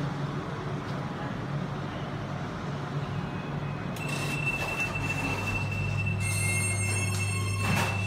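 Express GEC traction lift running: a steady high whine starts about four seconds in and a low motor hum about a second later. Further whining tones join, and a single clunk comes near the end.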